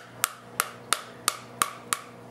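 Wooden spoon whacking the rind of a halved pomegranate held cut side down, knocking the seeds loose: six sharp knocks, about three a second.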